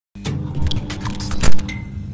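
Logo intro sting: a quick run of clicks and rattles over a low steady hum, building to a heavy hit about one and a half seconds in.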